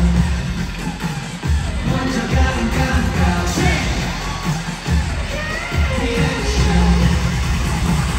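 A K-pop boy group's live arena concert heard from the audience: a pop track with a heavy bass beat and singing over the PA system.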